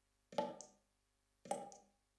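Two sharp knocks about a second apart, each ringing briefly before dying away.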